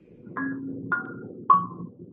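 A short musical transition sting: three struck percussion notes about half a second apart, each a step lower than the last and ringing briefly, over a low steady tone.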